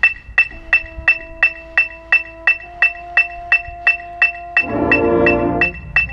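Electronic metronome clicking steadily at nearly three beats a second, with a single held note under it. About five seconds in, the band's brass, including sousaphones, sounds a loud chord for about a second.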